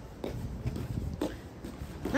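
Footsteps on a concrete walkway with a low, uneven rumble of wind or phone handling, and one brief faint voice sound about a second in.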